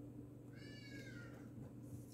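A bird's single drawn-out call, faint, about a second long and sliding slightly down in pitch, over a steady low hum.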